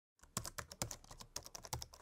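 Quiet typing on a computer keyboard: a quick, irregular run of key clicks that starts a moment in.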